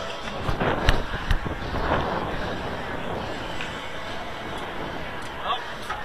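Outdoor ballpark ambience: wind rumbling on the microphone, faint distant voices, and two sharp knocks about a second in.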